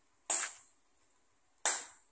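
Two sharp metallic strikes about a second and a half apart, each with a brief high ring that fades quickly: a hammer striking a steel chisel against stone.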